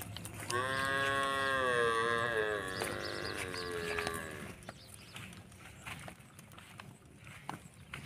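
A goat in a moving herd gives one long, drawn-out bleat of about four seconds, starting about half a second in; faint hoof steps on the dirt track are heard around it.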